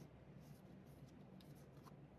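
Near silence, with faint rustles of a card presentation folder being handled and unfolded.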